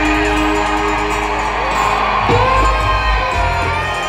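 Live acoustic string band playing an instrumental passage: fiddle melody with sliding notes over acoustic guitar, resonator guitar and upright bass.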